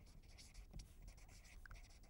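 Faint scratching of a felt-tip marker writing words on paper.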